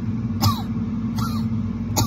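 A woman imitating a bad, hacking cough: about three short coughs, spaced under a second apart, over a steady low background hum.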